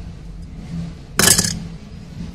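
A small die-cast metal toy car set down in a ceramic bowl: one short, sharp clatter of metal on ceramic about a second in.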